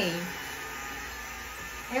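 Portable USB-rechargeable mini blender running steadily, its small battery motor spinning the blades through banana and milk.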